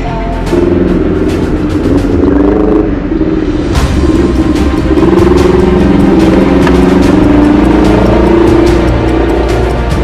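Motorcycle engine running while riding in traffic, its pitch wavering up and down, with background music playing over it.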